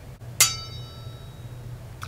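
A single sharp ding about half a second in, ringing with several clear tones that fade over about a second.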